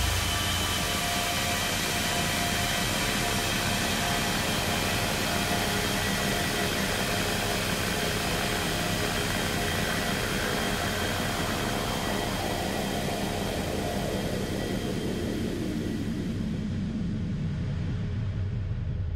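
A steady distorted drone of noise with a few held tones underneath, ending the metal song after the heavy riffing stops. It fades slowly, its high end dying away over the last few seconds.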